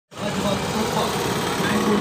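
Busy street traffic: car engines and road noise running steadily, with people's voices mixed in.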